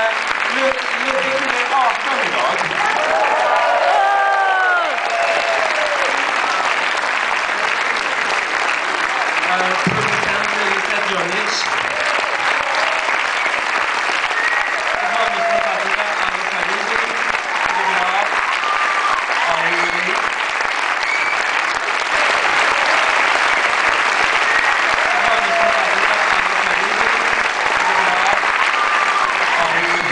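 A cinema audience applauding steadily throughout, with a few voices heard through the clapping.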